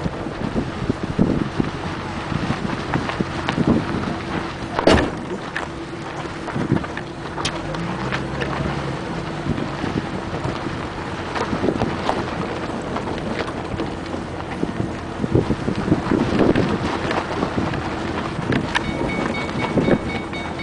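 Wind buffeting the camera microphone in irregular gusts and thumps, with a faint steady hum underneath.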